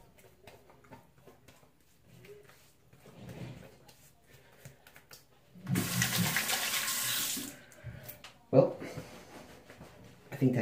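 Water running from a bathroom sink tap for about two seconds past the middle, then a single sharp knock about a second later, the loudest sound.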